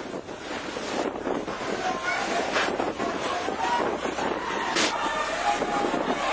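Storm wind buffeting the phone microphone, with rain and people's raised voices through it. Two brief hissing bursts come about two and a half and five seconds in.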